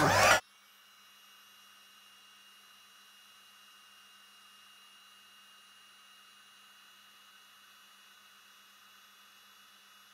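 A heat embossing tool's blower: a brief loud rush of air at the very start that cuts off abruptly, leaving only a faint steady hiss.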